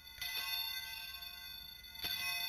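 Altar bells rung at the elevation of the chalice during the consecration at Mass: a quick double strike just after the start, ringing on and slowly fading, then a fresh strike right at the end.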